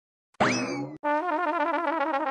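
A cartoon sound effect about half a second in: a quick sweep up in pitch that then dies away, as a character vanishes from the picture. From about one second in, a short warbling musical sting with a wobbling tune, a scene-change jingle.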